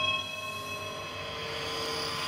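A sustained electronic drone chord, several steady held tones over a hiss, used as a transition sound effect between narrated segments.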